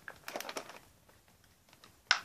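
Faint rustling and clicking of plastic packaging in the first second, as an action figure is worked out of its blister tray.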